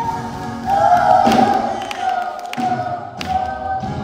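A quartet of children's voices singing together in harmony through microphones and a PA, holding long notes. A couple of short thumps sound during the singing.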